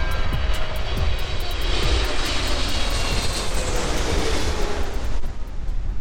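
Jet airliner flying low overhead: its rushing noise builds through the middle, with a slowly falling whine, and fades near the end. Background music with a steady beat plays under it.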